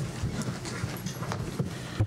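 Scattered knocks, clicks and shuffling of people sitting back down in chairs in a meeting room, with no clear rhythm.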